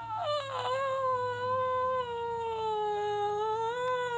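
A woman's voice holding one long, high, wordless note that sags slightly in pitch and lifts again near the end.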